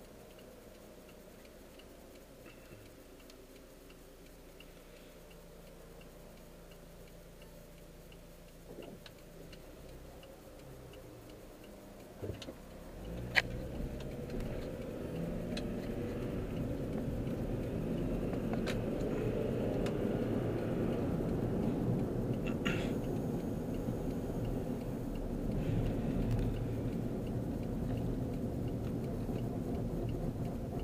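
Car interior sound: quiet at first with faint regular ticking, then about twelve seconds in the engine and road noise rise into a steady rumble as the car gets moving, its engine pitch climbing slowly. A few sharp clicks stand out, the loudest just after the noise rises.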